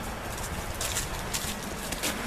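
Wind gusting on the camera microphone outdoors, a steady rumbling hiss, with a few brief crackling rustles about a second in.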